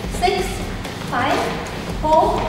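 A woman's voice calling out two short words, the countdown of the exercise repetitions.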